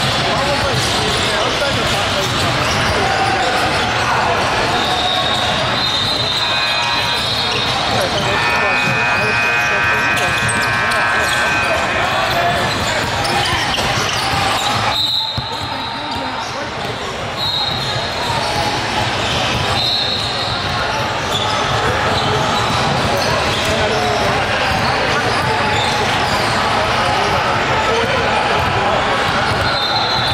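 Live sound of a basketball game in a large gym: a basketball bouncing on the hardwood as it is dribbled, over indistinct voices of players and spectators.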